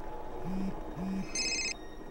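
A mobile phone ringing: two short low buzzes, then a brief high electronic ring tone, the pattern repeating.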